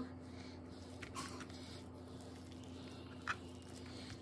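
Faint wet squishing of raw chicken skin being pulled off the meat by hand, with a couple of short soft squelches over a low steady hum.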